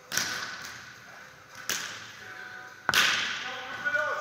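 A beach volleyball struck three times by players' forearms and hands, sharp slaps a little over a second apart, the last the loudest. Each hit rings on in the echo of a large indoor sports hall.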